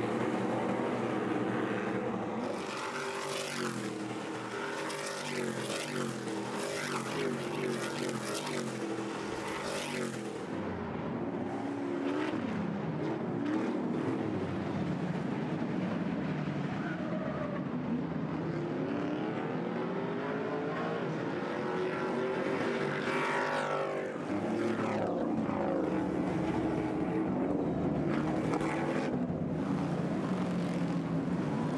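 A pack of Stadium Super Trucks' race engines revving as they run together on a street circuit, the pitch rising and dropping with each gear change and throttle lift. Past the halfway mark the engine note sweeps up and then falls away as trucks go by.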